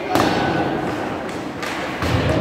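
Hockey puck struck hard, a sharp thump with echo just after the start, followed by a lighter knock near the end.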